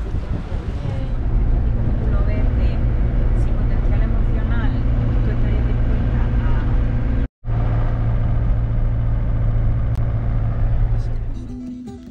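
Steady low drone of a motorhome's engine and road noise heard inside the cab while driving, with faint voices over it. It cuts out for an instant about seven seconds in, then carries on until it fades just before the end.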